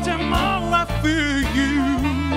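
Live band playing a jazzy pop song: a sung melody with vibrato over electric guitar, drums and a bass line, with a saxophone in the band.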